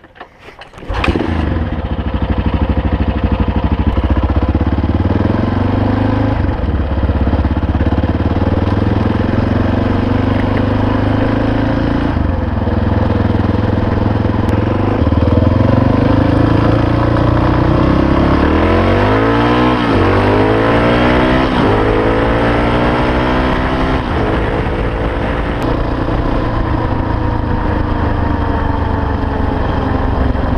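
Honda XR650R single-cylinder four-stroke engine, with a freshly rebuilt top end, an uncorked exhaust and a stage one Hot Cams camshaft. It starts about a second in and then runs under way. From about halfway, its pitch rises and drops back again and again as it is accelerated up through the gears.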